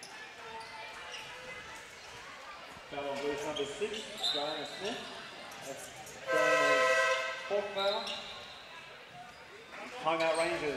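A basketball arena's buzzer sounds once, a steady tone lasting about a second, calling a timeout. Voices and the noise of the gym are heard around it.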